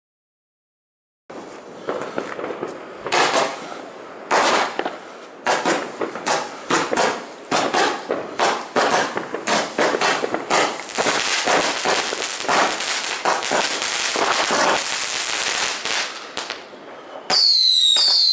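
Xplode Crazy Box firework battery firing after a second or so of silence: a rapid, irregular run of shots lasting about fifteen seconds, which thins out near the end. Just before the end comes a series of whistles that fall in pitch.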